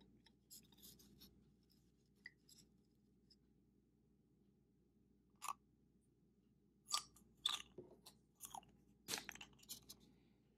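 Faint, scattered clicks and taps of a small plastic vial and plastic dish being handled while vinegar is poured from the vial into the dish. The taps bunch together and are loudest in the last three seconds, as the vial is set back down on the tray.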